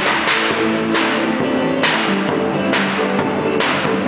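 A live acoustic ensemble playing: guitar and violin carry sustained notes over a regular swishing percussion stroke, about one a second.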